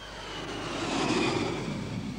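Four-engine jet airliner on the runway, its engine noise swelling to a peak about a second in and then easing slightly, with a faint high whine above it.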